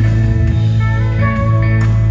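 Live band playing an instrumental passage between sung lines: a plucked guitar melody over a steady bass line, with a drum hit near the end.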